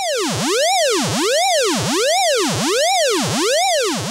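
Electronic siren sound effect: a synthesized wail whose pitch rises and falls evenly, about once every three quarters of a second.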